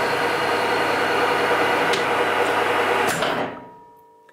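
EMCO V13 metal lathe running on a threading pass, giving a steady mechanical running noise from the spindle and gear train. About three seconds in it is switched off and winds down, fading away within a second.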